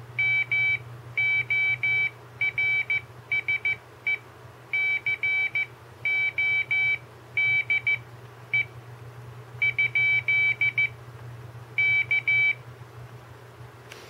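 Morse code sidetone from an Arduino capacitive iambic touch keyer: a high-pitched beep keyed on and off in dots and dashes as the touch paddles are held, stopping about a second and a half before the end. A steady low hum runs underneath.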